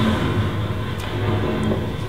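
Steady low rumble of a train carriage in motion, a continuous ambience bed with no distinct events.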